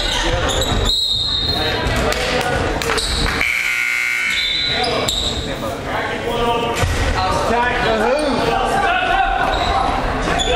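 Indoor basketball game sound: a basketball bouncing on a hardwood court amid players' and spectators' overlapping voices and calls, echoing in the gym.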